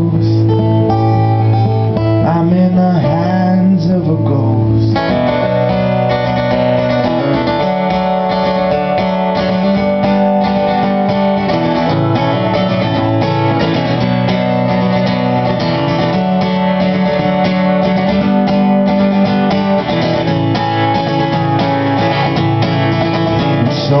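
Acoustic guitar played live in an instrumental break: held, ringing chords for the first few seconds, then steady strumming from about five seconds in.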